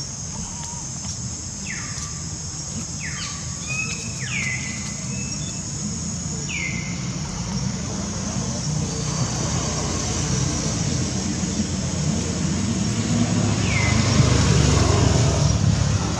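Outdoor ambience dominated by the low rumble of a passing motor vehicle, swelling toward the end. Over it runs a steady high hiss, with about six short high chirps that drop in pitch, scattered mostly through the first half.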